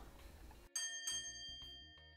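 A bell-like chime sounds about two-thirds of a second in: several steady tones at once that ring on and fade slowly, an editing transition sound.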